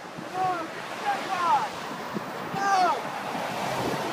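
Steady rush of road traffic with wind buffeting the microphone, and high voices shouting out three times in short falling-pitch calls.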